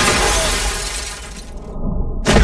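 Film sound effect of glass shattering, its debris tailing off over a steady low rumble; the high end drops out briefly near the end.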